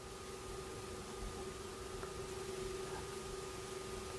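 Quiet room tone: a faint steady hum over a light hiss.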